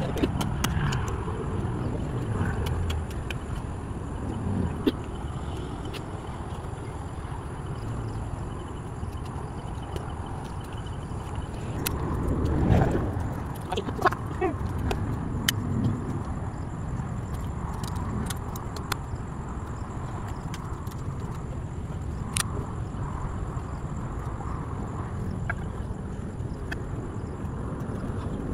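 A hoe chopping into grassy soil: scattered dull knocks and scrapes over a steady low rumble.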